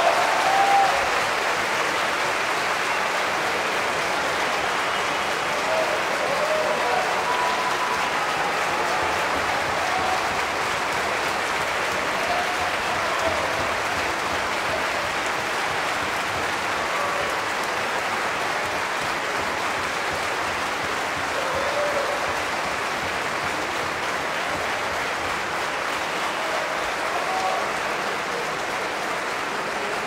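A large concert-hall audience applauding steadily. The last chord of the sheng and orchestra dies away under the applause about a second in.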